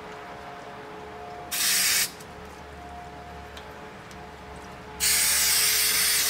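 Aerosol can of spray adhesive hissing in two sprays: a short burst of about half a second, then a longer one of over a second near the end.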